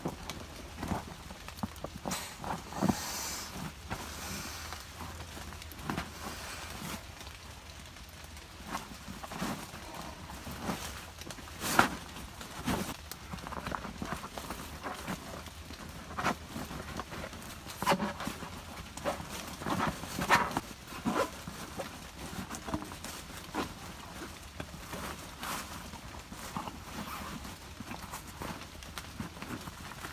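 Gear being handled by hand: a camouflage roll-top dry bag rustling as it is unrolled, reached into and repacked, with irregular knocks and taps from items inside, the sharpest about twelve seconds in.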